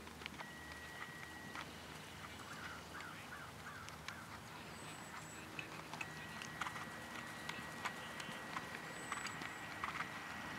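Faint hoofbeats of a horse walking on a grass dressage arena, as scattered soft clicks that come more often in the second half. Short bird chirps come a few seconds in, and a steady high thin tone sounds briefly early and again from the middle on.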